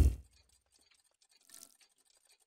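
Logo-animation sound effect: a deep impact hit that fades within about half a second, then quiet with one faint, brief sound about a second and a half in.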